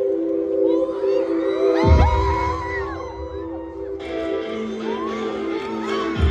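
A live band kicks off a song with a held chord. A heavy low hit lands about two seconds in, and the crowd screams and cheers over the music.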